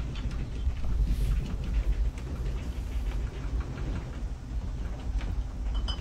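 Deep steady rumble with faint rattling: a house shaking in an earthquake.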